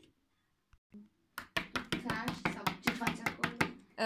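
Quick, evenly spaced taps of a small plastic Littlest Pet Shop figurine hopped along a table, about six a second, starting a little over a second in, with a voice over them.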